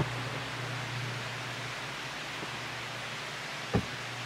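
Steady hiss of outdoor background noise, with one brief knock near the end.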